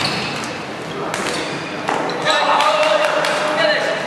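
Dodgeballs smacking and bouncing on a wooden sports-hall floor several times, with players shouting and calling out, louder from about halfway through, all echoing in the large hall.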